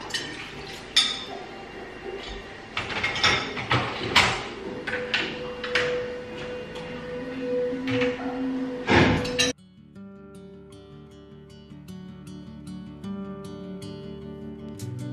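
Crockery clinking and dishwasher racks rattling as an open dishwasher is unloaded, in a run of sharp clinks and knocks. It cuts off abruptly about nine and a half seconds in, and gentle acoustic guitar background music follows.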